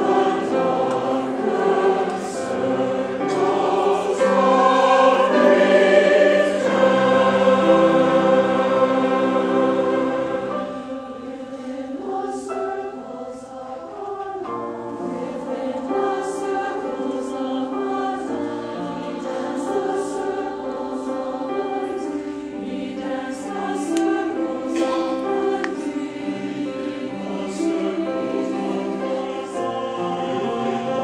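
Mixed-voice choir singing in sustained chords, fuller and louder through the first ten seconds, then softer and steadier.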